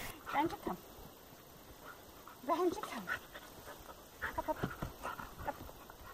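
Siberian husky panting in quick short breaths, with a few brief soft vocal sounds.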